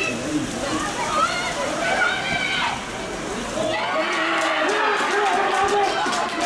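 Outdoor football-pitch sound: several voices shouting and calling over wind noise on the microphone. From about four seconds in, excited shouting and cheering with sharp handclaps as players celebrate a goal.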